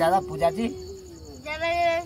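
Crickets chirping steadily in the background, a fast, even pulsing trill, under a drawn-out human voice that holds one long note through the first second and comes back loudly near the end.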